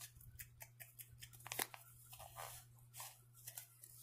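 Faint, irregular crackling and rustling from hands handling a skein of wool-blend yarn close to the microphone, with a longer rustle about halfway through.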